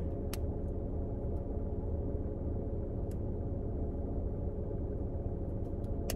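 Steady low hum heard inside a parked car's cabin, with a few faint thin clicks.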